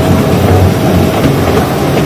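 A small tourist train running along the track, heard from on board: a steady, loud rumble of wheels on rail.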